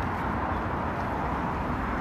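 Steady city street ambience, mainly traffic noise: a continuous low rumble and hiss with no distinct events, picked up by a phone's built-in microphone.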